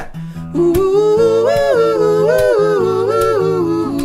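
A cappella music: a wordless 'hoo' melody, starting about half a second in and stepping up and down, sung over sustained lower harmony voices.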